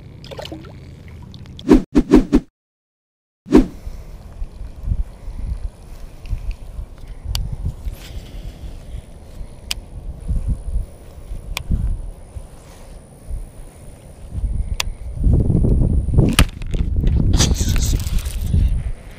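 Wind buffeting an action camera's microphone in uneven low gusts, strongest near the end. A few sharp handling clicks come about two seconds in, followed by a second of dead silence where the footage cuts.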